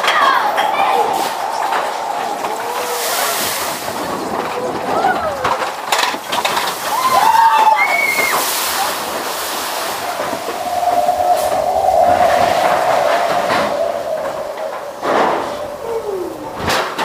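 Matterhorn Bobsleds roller-coaster sled running along its steel track with wind rushing on the microphone, a few sharp clacks, and riders whooping and yelling over it, one long held yell near the end.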